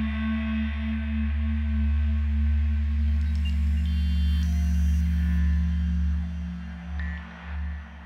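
ASM Hydrasynth playing a cinematic ambient patch: a deep sustained drone with steady bell-like tones above it. The notes change about three seconds in, with higher tones entering, and near the end the low drone wavers in short pulses.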